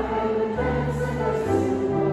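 A small choir singing a hymn in held notes, accompanied by piano and upright double bass.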